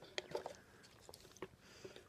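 Faint chewing: a few soft, scattered mouth clicks from chewing the tapioca pearls of a bubble tea.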